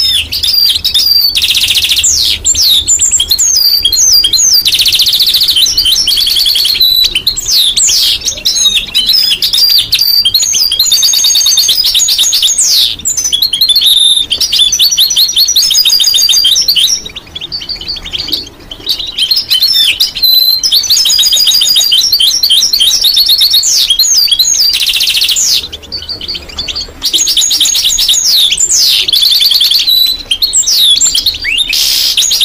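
European goldfinch singing loud and close: a long run of fast twittering phrases and buzzy rapid trills, broken by two short pauses, one past the middle and one near the end.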